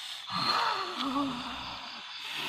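A person's wordless, breathy vocal sound with a wavering, dipping pitch.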